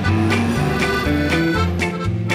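Upbeat instrumental background music with a bass line moving from note to note.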